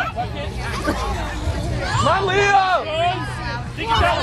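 Spectators chattering, with one voice yelling a long, drawn-out call about two seconds in, over a steady low hum.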